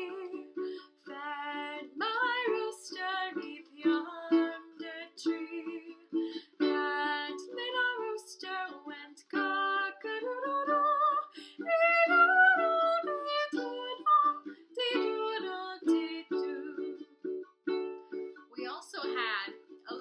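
A woman singing a children's farm-animal song while strumming a Makala ukulele, her voice sliding up and down in places.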